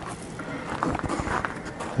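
Footsteps on gravel, a string of irregular steps.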